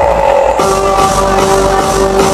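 Loud dance music played over a sonidero DJ sound system, with a steady bass beat; a held chord comes in about half a second in.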